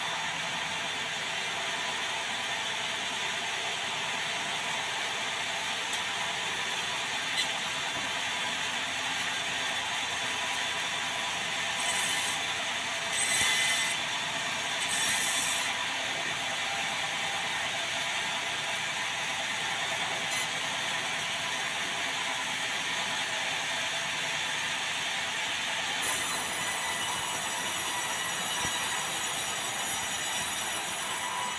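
Sawmill band saw running steadily as the log carriage moves a hollow, rotten-cored log through the blade to saw off a board. A few short hissing bursts come midway, and a higher whine over the last few seconds.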